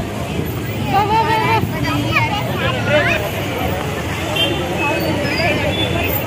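Several voices, children among them, talking over one another above a steady low rumble of busy street traffic with auto-rickshaws.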